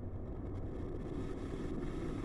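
Glass electric kettle heating water toward the boil: a steady rumble of forming bubbles that grows slightly louder.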